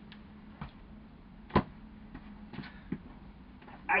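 A sharp click or knock about one and a half seconds in, with a few fainter ticks before and after it, over a faint steady hum.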